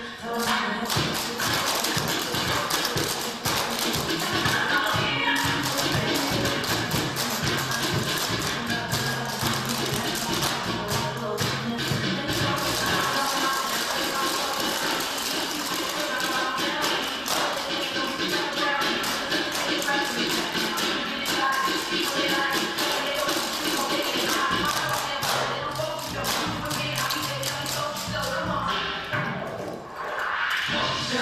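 A clogging team's rapid taps on a studio floor, many dancers striking together over a recorded music track.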